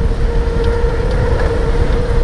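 Electric motor of a 3000 W 48 V e-bike at full throttle near 35 mph, giving a steady high whine at constant pitch. Under it runs a heavy low rumble of wind buffeting the microphone.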